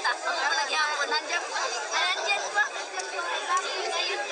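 Several people talking at once in overlapping chatter, with no single voice standing out. The sound is thin, with almost nothing in the low range.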